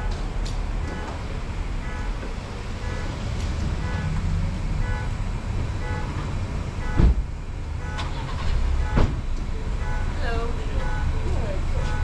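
Steady low rumble of a car idling, heard from inside its cabin, with a repeating electronic beep about twice a second. Two thumps come in the second half, and a voice near the end.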